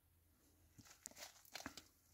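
Near silence, with a few faint, short clicks and rustles in the second half.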